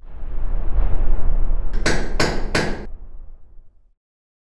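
Logo sting sound effect: a low rumbling swell, then three quick, sharp hammer-like strikes a fraction of a second apart, fading away.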